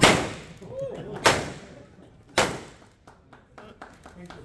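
Three confetti cannon blasts about a second apart, each a sharp bang that dies away quickly.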